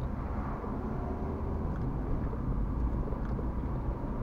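Car driving slowly, heard from inside the cabin: a steady low rumble of engine and tyres on the road.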